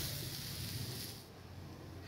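A soft, steady sizzling hiss from mashed potato being stirred through hot oil tempering in a stainless steel pan. It fades about a second in.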